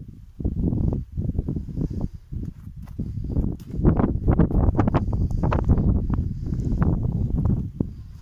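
Rumbling, rustling noise on a handheld microphone outdoors, the kind wind and handling make, growing louder about four seconds in.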